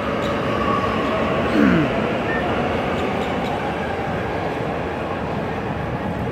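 Medellín Metro train running through the elevated station: a steady, even noise, with a faint thin whine in the first second or two.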